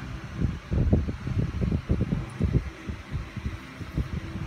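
Irregular low rumbling and thumping of handling noise on a phone's microphone as the phone is moved about.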